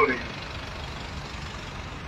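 Steady outdoor background noise, an even low rumble and hiss with no distinct events, following the tail of a man's spoken word at the very start.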